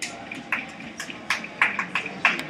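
A quick, irregular run of sharp clicks and knocks, about eight in two seconds, louder in the second half.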